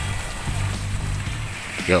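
Water churning in a washing machine's wash tub as the newly fitted wash motor drives the pulsator, under background music with a steady low bass line.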